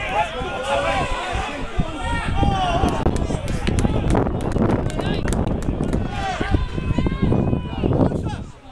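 Shouting voices on a football pitch, several calls overlapping, over a steady low rumble. A cluster of sharp knocks falls around the middle.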